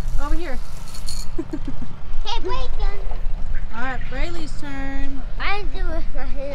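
Young children's voices talking and calling out in short high-pitched bursts, with one held note about five seconds in, over wind rumble on the microphone.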